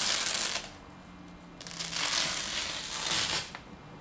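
Hook-and-loop (Velcro) fastener being peeled apart slowly, a crackling rip in two pulls: a short one at the start, then a longer one beginning about a second and a half in.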